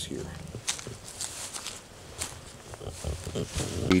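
Footsteps on concrete steps: a string of irregular light scuffs and taps as someone climbs.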